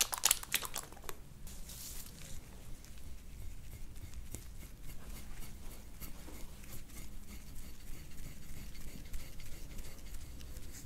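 Stainless-steel soft-tissue scraping tool stroking over oiled skin on a muscular back, a faint scratchy sound made of many small irregular ticks. A cluster of sharp clicks sounds in the first second.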